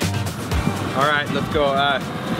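Background music stops at the very start. A steady noise from a fishing boat on the water follows, with a man's voice coming in about a second in.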